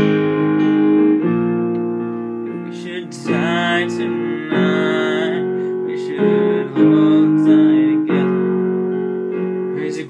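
Ashton digital piano playing slow, sustained chords, each new chord struck about every one to two seconds and left to ring and fade.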